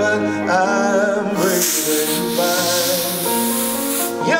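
A band plays a slow ballad with a male singer, and from about a second and a half in a loud, steady hiss from a stage special-effects jet covers the music, cutting off suddenly near the end.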